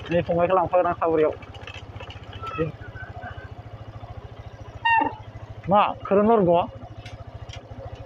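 Small motorbike engine running at low speed, a steady low putter, with voices talking over it.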